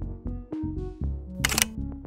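Background music of short, evenly paced pitched notes. About one and a half seconds in, a Sony camera's shutter fires a rapid burst of clicks.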